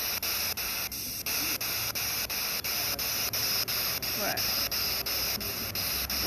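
Spirit box sweeping through radio stations: a steady static hiss chopped into short steps about four times a second.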